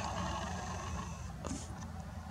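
Faint steady low rumble with a light hiss and no distinct event, apart from a brief soft hiss about one and a half seconds in.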